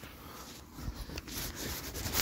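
Faint rustling with a few light scuffs and clicks: footsteps walking through grass.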